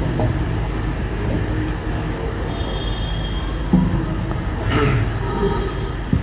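A steady low rumble with a brief rustle-like noise about five seconds in.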